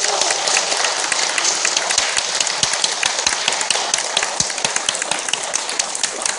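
Audience applauding: dense, steady hand clapping.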